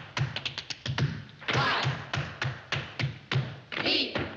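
Tap dancing: metal-plated tap shoes striking a wooden stage floor in quick flurries of crisp taps, over a steady low beat.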